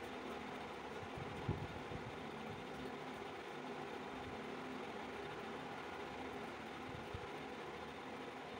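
Faint steady background hum and hiss, with a couple of soft knocks about a second and a half in and near the end.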